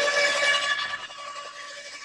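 Makita UD2500 electric roller shredder switched on and running with no load, a steady mechanical whine with several tones. It is loudest at switch-on and settles quieter after about a second.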